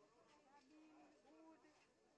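Faint, distant voices of people talking in the background; otherwise close to silence.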